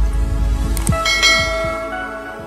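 Logo-animation intro sound effects: deep booming hits with falling whooshes, then a bell-like chime about a second in that rings on and slowly fades.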